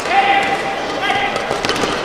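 Indoor badminton hall just after a rally ends: a single high held note of about a second, a sharp shoe squeak or short cry, followed by a few light knocks and background voices.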